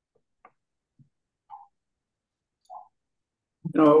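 Near-silent video-call audio with a few faint, brief clicks and blips, then a man's voice starts speaking near the end.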